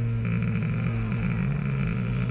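A man's long closed-mouth hum while thinking of an answer, held on one low note and then wavering up and down.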